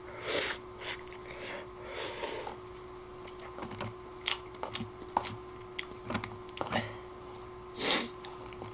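A person slurping instant ramen noodles in several short hissing pulls, followed by a few seconds of chewing with small sharp clicks, and one more slurp near the end.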